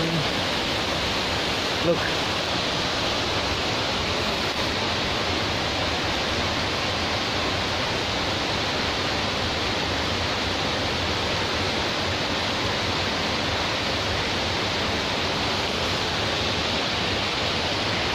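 Steady, even rush of water from a 60-metre-high waterfall.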